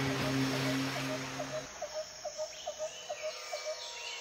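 A held low 'Om' drone of the meditation track stops about a third of the way in, leaving a rapid run of about ten short animal calls, some five a second, over a steady hiss of nature ambience.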